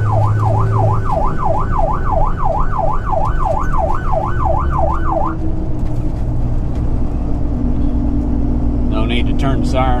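Electronic emergency siren in a fast yelp, sweeping up and down about three times a second, then cutting off about five seconds in, heard inside a tow truck's cab over the truck's engine and road noise.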